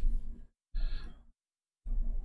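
A man sighing or breathing out twice in short breaths, each cut off abruptly by dead silence.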